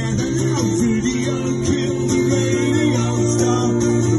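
Live band music led by a strummed acoustic guitar, with a ukulele, playing steadily.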